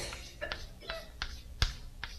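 Chalk clicking and tapping against a chalkboard while drawing: several short, sharp clicks, the loudest about a second and a half in.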